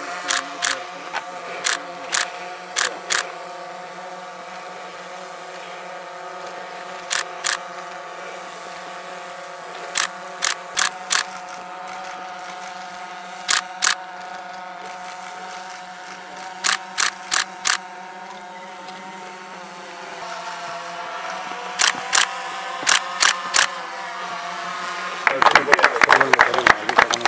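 Camera shutters clicking in quick runs of three to five shots, over a steady hum.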